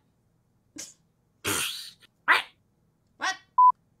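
A person imitating a dog in short bursts: a faint yip, a loud breathy huff, then two short barks. A brief clean electronic beep comes near the end.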